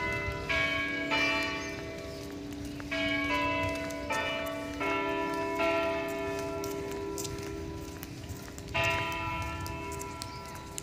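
Bell-like chime notes at several different pitches, struck one after another about every half second to two seconds. Each note rings on and fades while the next sounds. A last strike comes near the end.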